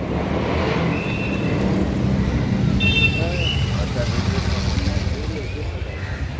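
Vehicle engines running in slow street traffic: a steady low rumble, with voices in the background.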